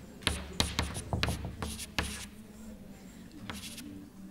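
Chalk writing on a blackboard: a quick run of sharp taps and scratchy strokes in the first two seconds, then a quieter stretch with a few more strokes near the end.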